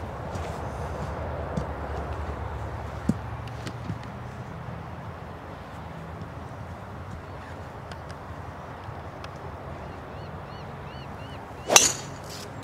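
A golf club striking the ball off the tee: one sharp crack near the end, over a steady outdoor background hiss.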